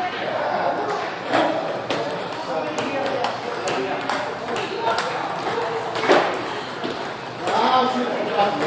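Table tennis balls clicking irregularly off paddles and tables, several sharp knocks a second, the loudest about six seconds in.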